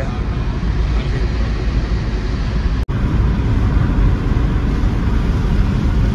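Steady road and engine noise inside a moving car's cabin, heavy in the low end. It cuts out for an instant a little before halfway through.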